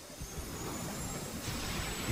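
Low steady rumble of an anime action sound effect, with a faint thin high tone that rises slightly over it.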